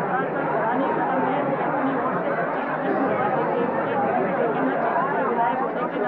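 Speech only: a woman talking, with other voices chattering around her.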